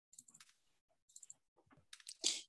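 Near silence broken by faint computer mouse clicks: a quick run of about four just after the start and three more about a second later.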